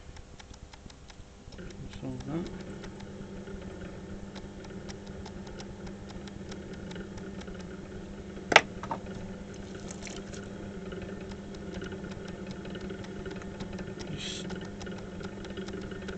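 Electric potter's wheel running steadily with a low motor hum. One sharp click comes about halfway through.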